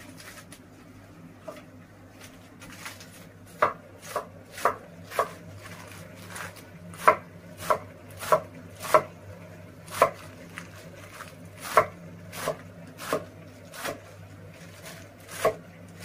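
Kitchen knife chopping lettuce on a wooden cutting board: sharp knocks, a few faint ones at first, then roughly two a second with short pauses from about three and a half seconds in.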